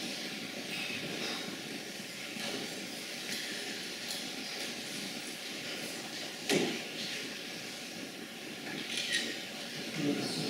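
Steady hiss of background room noise. It is broken by a short sharp sound about two-thirds of the way in and a fainter one near the end.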